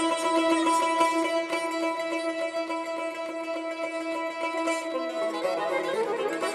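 Azerbaijani tar plucked in a mugham instrumental introduction in the segah mode, over long held notes from the accompanying ensemble. About five seconds in, the held notes stop and a quicker run of notes follows.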